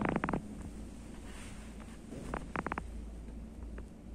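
Quiet low rumble with two brief runs of rapid clicks, one at the very start and one about two and a half seconds in.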